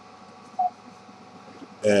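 A single short beep about half a second in, over a faint steady hum; a man starts speaking near the end.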